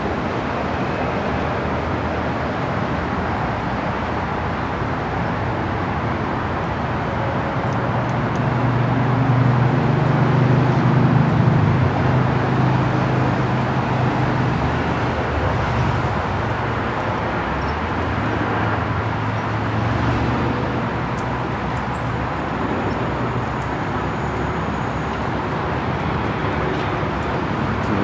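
Steady outdoor background noise with a low rumble that swells for several seconds in the middle, and faint high chirps on top.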